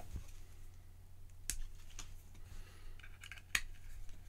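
Small plastic cable connectors and a pocket-sized plastic LED controller box being handled and plugged together. There are single sharp clicks about one and a half and two seconds in, then a quick run of clicks near the end, the loudest just before it ends.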